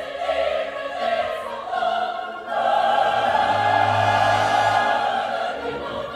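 Women's opera chorus singing in French over an orchestra: a few short sung phrases, then one long, loud held chord from about halfway through until just before the end.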